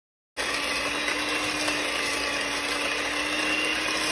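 Electric hand mixer running at a steady speed, its beaters whipping softened butter and granular sweetener in a stainless steel bowl: a steady motor whine over whirring. It starts abruptly about a third of a second in.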